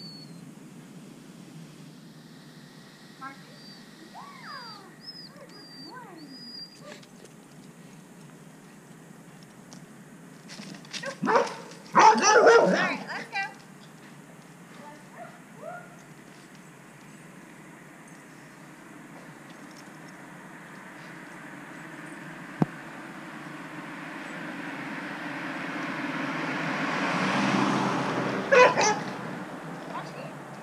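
A dog barking: a quick run of several barks about eleven seconds in, and a couple more near the end.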